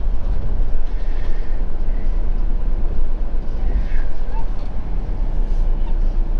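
Motorhome engine and tyre noise heard inside the cab while driving slowly round a turn: a steady low drone.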